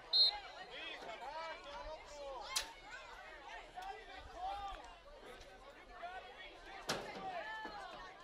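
Faint, scattered voices of players and onlookers calling across an open soccer field, with a short, high referee's whistle blast right at the start for an offside. Two sharp knocks stand out, about two and a half seconds in and near the end.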